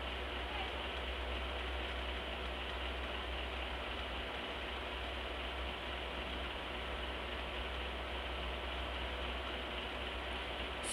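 Steady background hiss with a low hum underneath, unchanging throughout, with no distinct sounds from the pouring paste.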